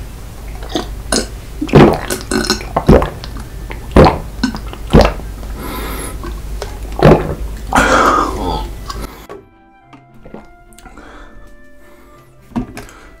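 Close-miked gulping and swallowing as water is drunk from a small plastic bottle, with sharp gulps about once a second. They stop a little past nine seconds in, leaving soft background music with steady tones.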